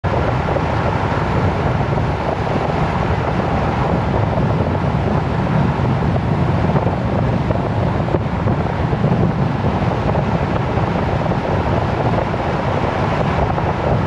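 Steady road noise of a pickup truck cruising at highway speed, heard from inside the cab: engine, tyres and wind blended into one even, unbroken noise.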